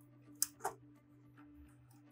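Two short, sharp clicks a fifth of a second apart from a motor wire being clamped into the terminal block of a pool-cover control box.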